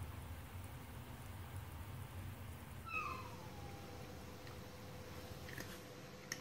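A cat meows once about halfway through, one falling call lasting about a second, followed by a few faint light clicks near the end.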